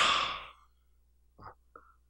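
A man's breathy exhale, like a sigh, fading out within about half a second, followed by a couple of faint short mouth sounds.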